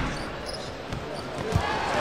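Basketball arena crowd murmur, with two dull thumps of a basketball bouncing on the hardwood court: one about half a second in and a stronger one near the end.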